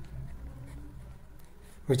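A pen writing on a paper notebook page: faint scratching strokes as a word is written.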